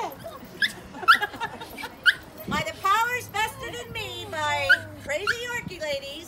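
A Yorkshire terrier gives a few short, high yips in the first two seconds or so, amid people's voices.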